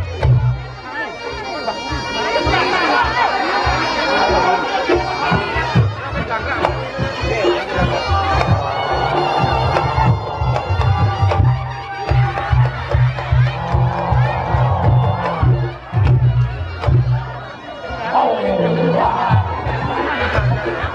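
Reog Ponorogo gamelan music: a slompret, the double-reed shawm of reog, playing a reedy melody with long held notes over a steady beat of drums. A crowd talks over the music.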